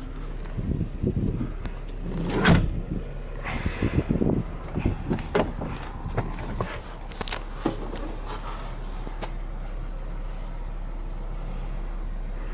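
Bumps, knocks and rustling as a person clambers from the rear seat over into the front seat of a 2-door Jeep Wrangler, the loudest knock about two and a half seconds in. After that only a steady low hum remains, the 3.6 Pentastar V6 idling.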